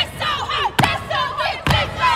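Group of young women chanting in unison, with a sharp percussive hit about once a second, over crowd noise.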